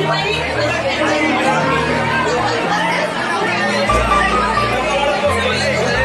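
Background music with a bass line that moves in held steps, deepest for about a second after the four-second mark, over the chatter of a crowd of young people talking at once.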